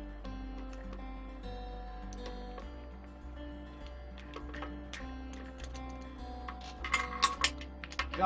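Background music of slow, steady held notes, with faint ticks throughout and a few sharp clicks and knocks near the end.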